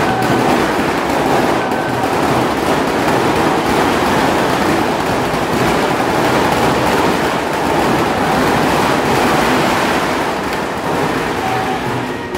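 A long string of firecrackers going off in a loud, continuous crackle that eases off near the end.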